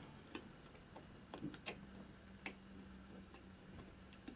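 Faint, irregular small clicks and taps of plastic model-kit parts being handled and pressed onto an H0-scale plastic building by hand, over a faint steady low hum.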